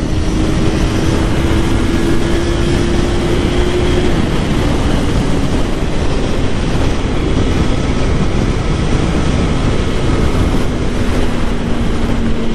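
Yamaha R3's parallel-twin engine cruising in sixth gear on its stock exhaust, its steady tone sinking slowly in pitch as the bike eases off a little. Heavy wind noise over the microphone.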